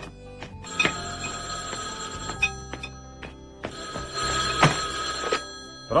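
Landline telephone ringing twice, each ring about a second and a half long, over background music.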